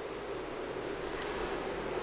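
Steady background hiss of room tone and microphone noise, with one very faint tick about a second in.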